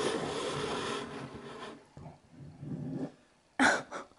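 A baby's tooth scraping along the edge of a table: a rasping scrape for the first couple of seconds that fades off, with a short, sharper sound just before the end.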